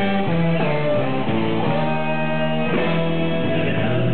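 A rock band playing live, with guitar chords to the fore that change every half second or so.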